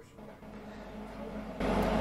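Steady low mechanical hum and rumble that slowly grows louder, with a jump in level near the end.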